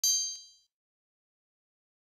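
Bright, high-pitched chime sound effect for an animated logo: a sudden ringing ding with a second lighter strike about a third of a second later, fading out within about half a second.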